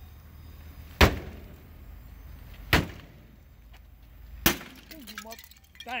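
Three separate crowbar blows on a car, glass breaking and tinkling, each strike sharp with a brief ringing tail, spaced a second and a half to two seconds apart.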